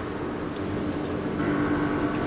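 Steady engine and road noise of a car, heard from inside the cabin, with a low even hum.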